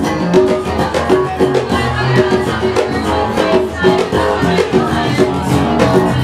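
Live band music: an electric bass line under keyboards and percussion, playing a rhythmic instrumental passage with a steady beat.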